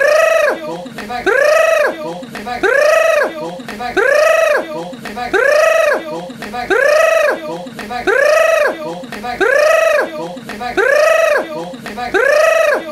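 A voice-like cry that rises and then falls in pitch over about half a second, repeated the same way about once a second.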